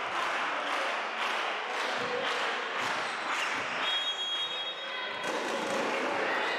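Spectators in a sports hall clapping and cheering in a steady rhythm, about two beats a second, with hall echo. A referee's whistle sounds for about a second, some four seconds in, signalling the serve.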